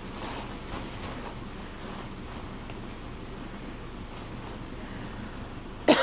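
A dog nosing and tearing into a plastic mailer bag: faint crinkling and rustling of the plastic, with a few soft scrapes.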